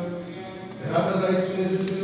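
Orthodox church chanting in a low male voice during a wedding service: long held notes, with a new phrase rising in pitch about a second in.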